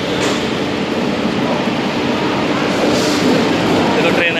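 Passenger train running beside a railway platform: a steady loud rumble and hiss of the coaches, with two brief higher hisses, one just after the start and one near three seconds in.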